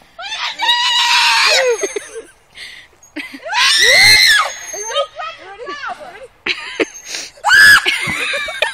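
Girls' voices screaming while swinging high and jumping off a swing: three loud, high-pitched screams, about a second in, about four seconds in and near the end, with quieter vocal sounds between.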